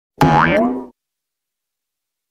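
Short cartoon-style sound effect for an animated logo intro, lasting under a second, with a pitch that glides upward.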